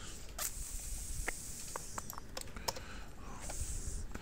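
Computer keyboard keystrokes and clicks, irregular and spaced out, over a faint steady hiss.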